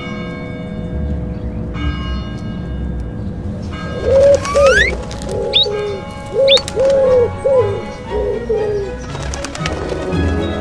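Soft background music, then, from about four seconds in, a run of about nine short cooing calls voiced for cartoon baby pigeons. A rising whistle glide comes at the start of the run, and two short high chirps fall among the calls.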